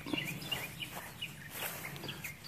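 A small bird chirping, a quick run of short repeated notes that thins out after the first half second into scattered chirps, over a faint outdoor background hum.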